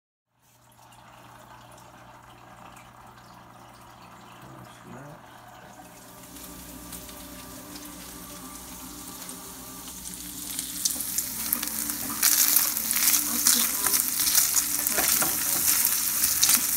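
Chopped bacon sizzling and crackling in a frying pan as it is stirred with a spatula. The frying gets loud in the second half, after a quieter stretch of faint steady hum.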